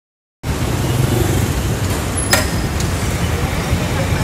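Loud, steady rumbling noise with no clear pattern, starting abruptly after a moment of dead silence, with one sharp click a little past two seconds in.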